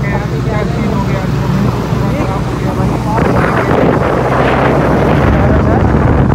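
Sportbike engine running at road speed with wind rushing past the microphone. About three seconds in the rushing noise grows louder as a second motorcycle rides up alongside.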